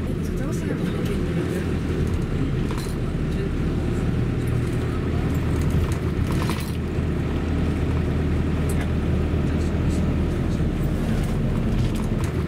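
Car driving slowly, heard from inside the cabin: a steady low rumble of engine and road noise, with a few light clicks or rattles.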